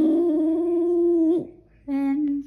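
Boston terrier howling in his sleep: one long, held note that glides in, holds steady and breaks off about a second and a half in, with another held note starting just before the end.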